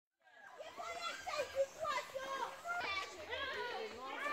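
A group of children chattering and calling out, several high voices overlapping, starting a moment after a brief silence.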